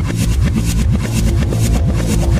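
Electronic dance track: a fast, even hi-hat pattern over a deep bass line, with short rising synth sweeps repeating several times a second.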